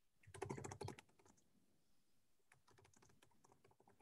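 Faint typing on a computer keyboard: rapid key clicks in two short runs, one about half a second in and another after about two and a half seconds.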